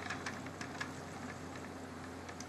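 Wooden spinning wheel running quietly while wool is drafted into yarn: faint, irregular light ticks over a low steady hum.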